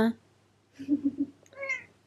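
A hairless cat gives one short meow in the second half, after a brief low murmur about a second in.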